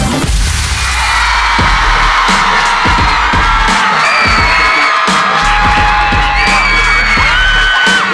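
Electronic dance music with heavy bass hits, and from about a second in a concert crowd screaming high-pitched over it.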